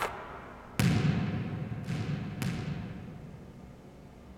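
A basketball bouncing on a hardwood gym floor: one loud bounce about a second in, then two softer bounces coming closer together, each ringing out in the echo of the empty gym.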